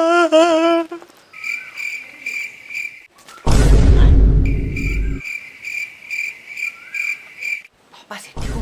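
Crickets chirping at one steady high pitch, about two chirps a second. About three and a half seconds in, a loud low rumbling burst lasting under two seconds drowns them out.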